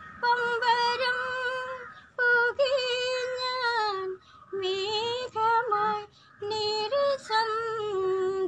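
A woman singing a song in held, high phrases with vibrato, a short breath between each phrase.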